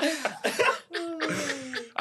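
Men laughing hard: a second of breathy, rasping bursts of laughter, then one drawn-out laugh that falls in pitch.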